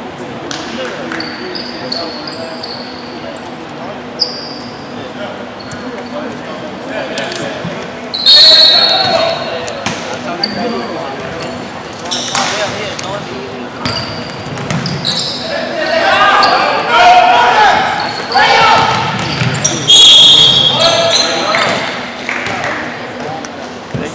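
Basketball play on a hardwood gym floor: a ball bouncing and sneakers squeaking, echoing in a large hall, with players' voices shouting. The loudest moments come suddenly about 8 seconds in and again near the end.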